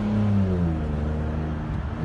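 2013 Ford Explorer's 3.5-litre V6 with the mufflers cut off, running at low revs on the move; its deep exhaust note drops slightly about half a second in, then holds steady as the throttle is held back.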